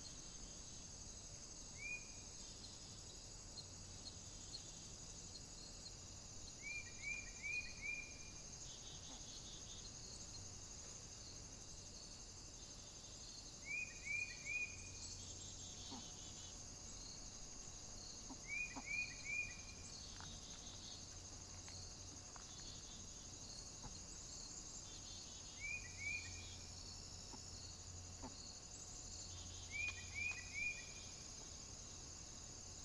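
Steady high-pitched insect chorus, like crickets, in woodland, with groups of three or four short falling chirps every five to seven seconds.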